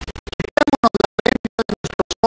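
A man's speaking voice broken up by the audio cutting in and out about a dozen times a second, heard as stuttering, scratchy fragments: a glitching transmission feed.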